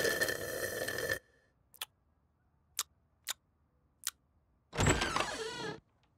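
A cartoon sound effect of a drink being slurped through a straw for about a second, followed by four sharp, scattered clicks and, near the end, a short wavering sound.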